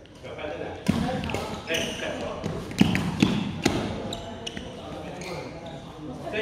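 Badminton play in an echoing gymnasium: a run of sharp racket hits on a shuttlecock and thuds of footwork on a wooden floor, about six in quick succession in the first half, over the chatter of voices in the hall.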